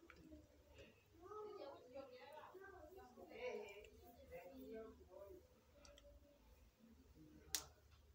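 Faint, indistinct background voices over a low hum, with one sharp click near the end.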